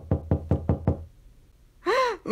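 Rapid knocking on a door, about six quick knocks in the first second, then it stops.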